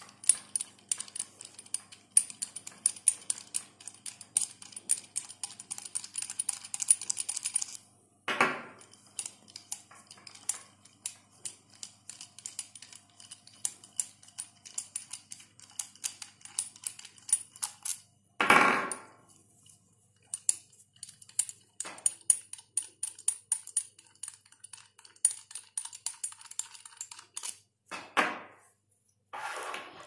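Small stainless-steel socket-head cap screws being unscrewed from a check valve's bolted cover, giving runs of rapid light metallic ticking and clinking. There are pauses, and three louder brief handling noises about 8, 18 and 28 seconds in.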